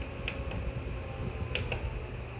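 Arctic Air personal air cooler's small fan running with a steady low hum, while a few sharp clicks from handling the unit come in two quick pairs.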